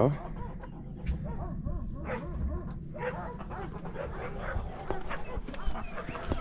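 Backyard mixed flock of chickens and other poultry calling, with many short, faint calls scattered throughout over a low rumble.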